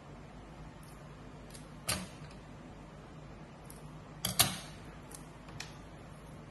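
Paper being folded and creased by hand: a short crisp snap about two seconds in, then a louder cluster of two or three snaps a little after four seconds, and a faint one near the end.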